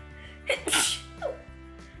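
A woman sneezing once, a sharp loud burst a little after half a second in, over steady background music.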